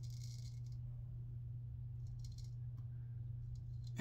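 A 7/8 full hollow-ground straight razor cutting through lathered beard stubble on the neck, a crisp rasping hiss as the blade 'sings'. There is one stroke at the start, another about two seconds in, and a few faint ticks after.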